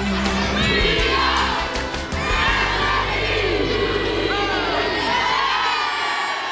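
A group of schoolboys shouting, cheering and laughing together, many voices at once, over a backing track that dies away in the second half.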